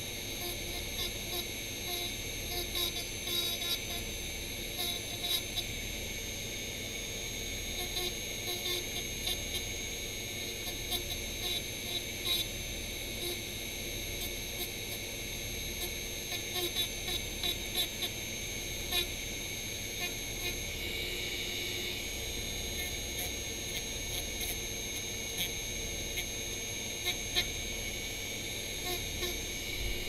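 Handheld rotary tool running at a steady high whine, its small grinding bit scratching lightly and unevenly as it is pressed gently against a thin piece to grind it thinner.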